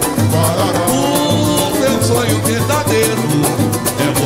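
Live pagode band playing: cavaquinho and acoustic guitars over samba hand drums keeping a fast, even beat, with a male voice singing.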